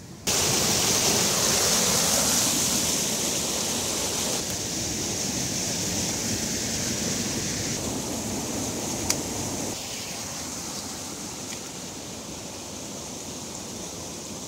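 Running water of a small stream rushing steadily, a bright hiss that steps down a little in level a few times. A single sharp click about nine seconds in.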